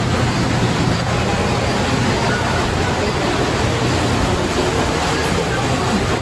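Steady rushing of moving water in a turtle and duck exhibit pool, with faint voices of other visitors underneath.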